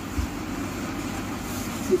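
Steady low background rumble, with one soft thump about a quarter second in.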